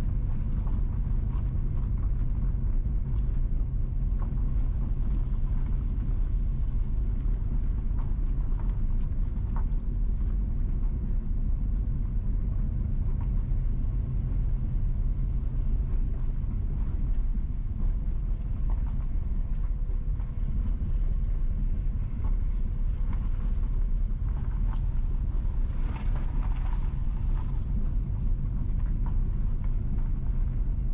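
Car driving slowly over a rough unpaved road: a steady low rumble of engine and tyres, with scattered light ticks.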